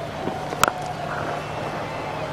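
A single sharp crack of a cricket bat hitting the ball, about two-thirds of a second in, over a steady low background hum.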